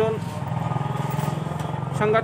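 A small vehicle engine running steadily nearby, a low hum with a fast, even pulse.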